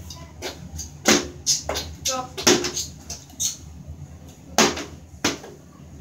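A plastic water bottle being flipped and landing on the bathtub rim, giving several sharp knocks and thuds spread across a few seconds.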